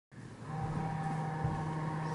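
Steady low hum with a fainter higher whine over light hiss: the room's background tone, fading in at the start, with a faint tap about one and a half seconds in.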